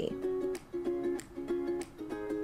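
Light background music of short, repeated plucked-string chords.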